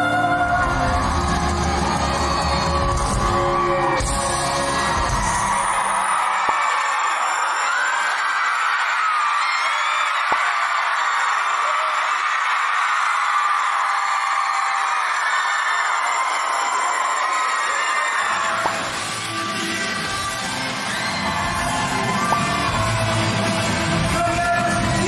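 Live rock band music in a concert hall. About six seconds in it gives way to a large audience screaming and cheering for roughly twelve seconds, with no bass under it. Band music with bass comes back near the end.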